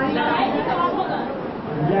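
Speech only: several voices talking at once in Hindi, as listeners call out answers.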